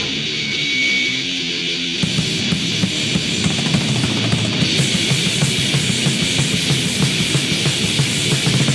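Death metal: heavily distorted electric guitars and drums. About two seconds in, the band drops into a faster, denser part.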